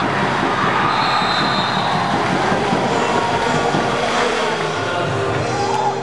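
Steady crowd noise in an indoor swimming hall during a water polo match, a dense continuous din with no single event standing out.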